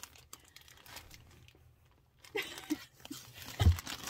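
Thin clear plastic bag of yarn crinkling as it is handled, faint at first. A few short vocal sounds come a little past halfway, and a dull thump near the end is the loudest sound.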